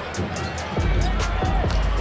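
A basketball bouncing on a hardwood court, heard as short knocks, under background music with a steady bass.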